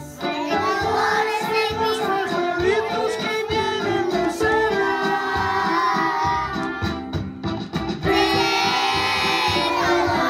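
A group of young children singing a song together in unison.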